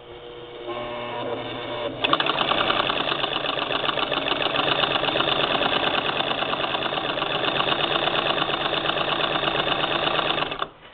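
A 1947 Singer 66-16 sewing machine with a tucker attachment on the needle bar, stitching a tuck in muslin. It starts slowly and speeds up over the first two seconds, then runs fast and steady with a rapid, even clatter of stitches.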